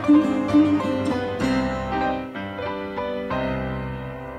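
Setar and piano duet: a quick run of plucked setar notes over piano, giving way after about a second and a half to held piano chords, with a new chord struck a little past three seconds.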